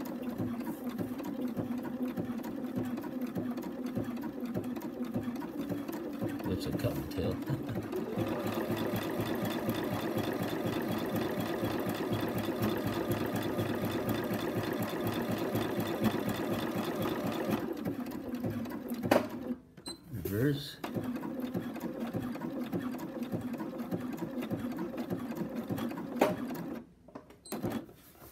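Bernina electric sewing machine zigzag-stitching a paraglider line, its needle running fast and steadily. It stops briefly about two-thirds of the way through with a couple of clicks, starts again, and stops shortly before the end.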